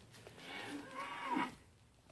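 A mini LaMancha goat bleating once, a call of about a second that wavers in pitch and is loudest near its end.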